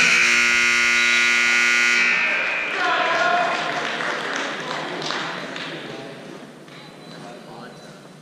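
Gym scoreboard buzzer sounding one steady tone for about two seconds as the period clock runs out to zero, signalling the end of the wrestling period. Voices in the hall follow, growing quieter.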